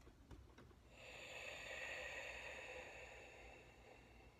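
A faint, long hissing breath that swells about a second in and fades near the end, after a few light ticks.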